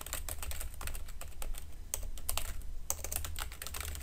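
Typing on a computer keyboard: a quick, uneven run of key clicks, over a steady low hum.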